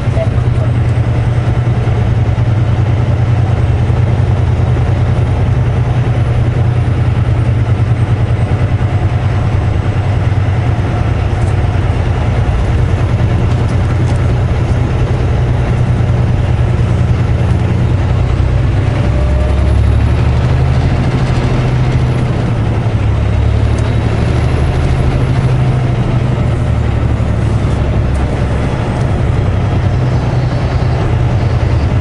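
A semi truck's diesel engine running steadily while the truck is under way, heard from inside the cab as a deep, constant drone with road noise.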